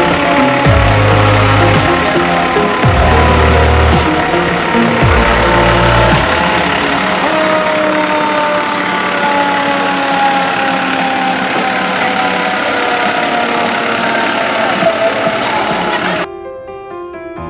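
Electronic music with heavy bass that drops in pitch over and over for about the first six seconds, over a steady din of parade vehicles passing. The bass then stops and the vehicle noise carries on, with a long tone that slowly falls in pitch.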